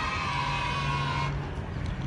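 A car pulling up, with a high-pitched squeal that falls slightly in pitch and cuts off just over a second in, over a steady low engine hum.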